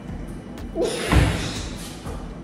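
A brief voice sound, then a loud thud with a short burst of noise about a second in.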